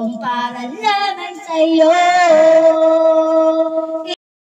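A woman singing a slow song into a handheld microphone, holding long notes with vibrato. A new phrase begins just after the start, and one long note is held through the second half.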